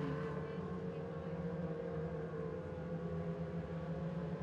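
A pack of mod lite dirt-track race cars running together at speed, their engines making a steady, even drone.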